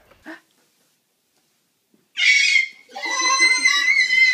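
A baby's loud, high-pitched squealing in two bursts, starting about two seconds in, after a brief toy clatter at the very start.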